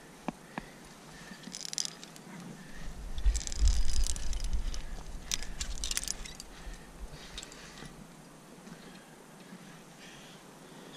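Climbing hardware on a harness jingling and clinking in short clusters as the climber moves up granite, with scuffs against the rock. A low rumble, such as wind or a bump on the head-mounted microphone, comes about three to four seconds in, and the jingling fades near the end.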